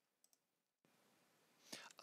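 Near silence: two faint, quick clicks about a quarter second in, then a low, even room hiss.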